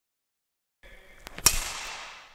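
Badminton racket striking a shuttlecock on a forehand clear: one sharp crack about one and a half seconds in, after a couple of fainter clicks, with an echo that dies away over about a second.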